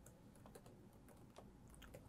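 Faint typing on a laptop keyboard: a few scattered, soft key clicks.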